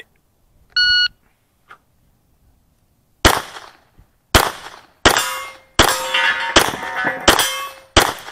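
An electronic shot timer beeps once, then about two seconds later a 9mm Smith & Wesson M&P Pro pistol fires single shots roughly every 0.7 to 1 second. From the third shot on, each shot is followed by the ring of a struck steel target.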